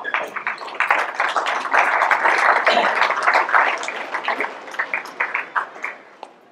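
Audience applauding, swelling about two seconds in and then tapering off toward the end.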